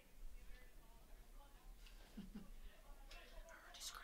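Near silence with faint, distant voices and a brief hiss near the end.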